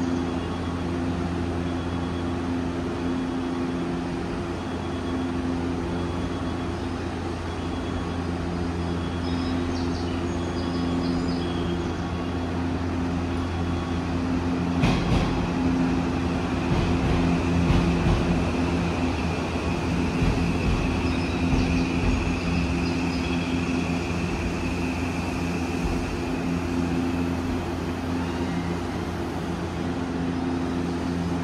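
Odakyu Romancecar train standing at the platform with its onboard equipment running in a steady low hum. About halfway through a click is heard, then a louder low rumble for several seconds, with a faint high tone that fades later on.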